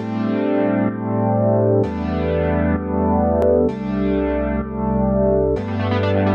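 Background music: sustained chords that change about every two seconds, each change starting with a bright attack that fades away.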